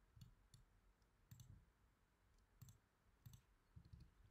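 Faint, sparse clicking of a computer pointing device, about half a dozen clicks spaced unevenly over near-silent room tone, as objects are picked on screen.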